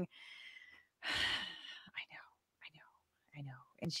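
A person's sigh: a soft breath in, then a loud breathy exhale about a second in, followed by faint whispered or murmured speech.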